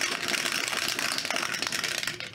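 Two dice rattling fast inside a clear plastic dice dome as it is shaken: a dense, steady clatter of small clicks against the plastic.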